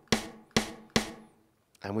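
A short sampled snare drum, sliced from a drum-break loop onto a drum-machine pad, triggered three times a little under half a second apart, each hit trailing off in a reverb tail from the reverb plug-in just added to the snare.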